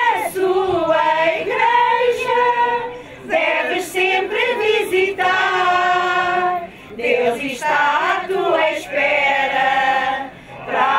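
A group of women singing together without instruments, with brief breaks between phrases about three and seven seconds in.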